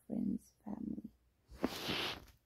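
A woman's voice making three short, low, even-pitched vocal sounds, then a breathy exhale in the last half second.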